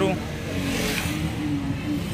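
Indistinct background voices over a steady low engine rumble, with a short sharp sound right at the start.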